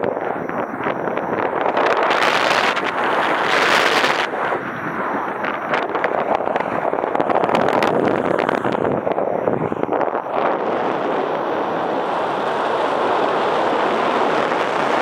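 Wind rushing over the camera microphone of a paraglider in flight, a steady noise with stronger gusts about two and four seconds in.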